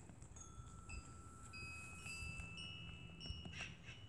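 Wind chimes ringing: several clear, steady tones at different pitches, each starting after the last and ringing on for a second or two so that they overlap.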